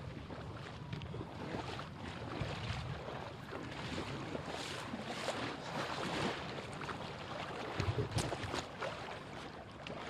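Floodwater splashing as a man swims and another wades through waist-deep water, with scattered louder splashes about eight seconds in. Steady wind noise on the microphone runs underneath.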